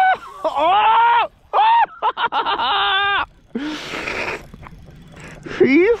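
A man's drawn-out, excited exclamations and groans ("åh"), several in a row over the first three seconds, as he strains against a strong fish on the rod. A short hiss follows about four seconds in.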